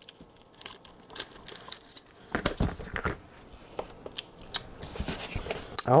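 Scissors snipping through thin plastic laminating film, then the film crinkling and rustling as it is handled, heard as irregular clicks and short rustles, loudest a little before halfway.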